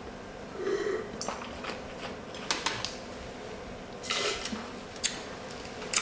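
A man sipping red wine from a glass and tasting it, with a short rush of air through the mouth about four seconds in and a few faint clicks.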